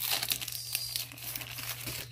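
Clear plastic packaging sleeve crinkling and crackling in irregular bursts as the printed acetate and paper sheets are slid out of it by hand.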